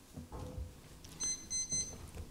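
A high-pitched electronic beep sounding in a few quick pulses, starting about a second in and lasting under a second, over faint room noise.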